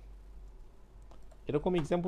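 Faint, scattered computer-keyboard keystrokes over a low steady hum, during a pause in a man's speech; his voice comes back about a second and a half in.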